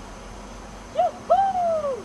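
A high-pitched two-note call, most likely a person calling: a short note about a second in, then a longer note that falls in pitch.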